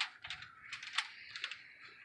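Aluminum foil crinkling and crackling as gloved hands move and wipe a raw pork butt resting on it, with a couple of sharper crackles, one at the start and one about a second in.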